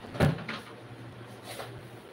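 A sharp knock about a quarter second in, followed by a couple of fainter knocks, over a low steady hum.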